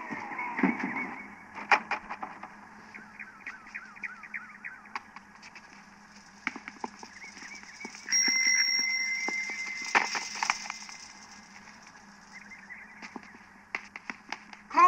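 Birds chirping in quick, repeated calls, with scattered small clicks and knocks. Just past the middle a steady high tone sounds for about two seconds, the loudest sound here.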